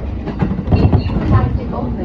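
Running noise of a moving Hachikō Line commuter train, with the train's recorded English-language announcement playing over it.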